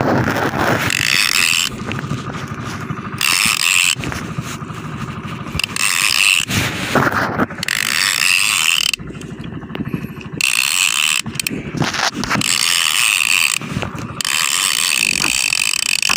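Shimano Torium 16HG conventional fishing reel being cranked hard in stop-start spurts of a second or two, its gears ratcheting, as a hooked giant trevally is reeled in.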